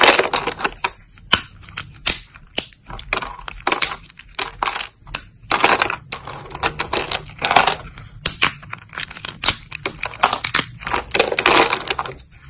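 Thin, crunchy soap plates being snapped and broken between the fingers: a run of irregular crisp cracks and crackling crunches, with denser bursts of crackle at the very start, around five and a half seconds in, and near the end.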